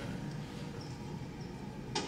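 Low, steady background noise with one sharp click near the end.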